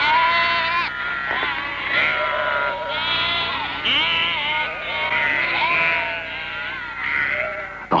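Sheep bleating: many wavering calls overlapping one after another without a break.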